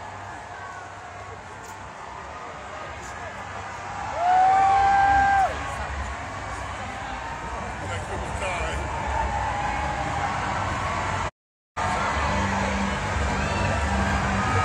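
Crowd of spectators chattering and cheering, with one long, high whoop about four seconds in, the loudest sound. The sound cuts out completely for a moment about eleven seconds in.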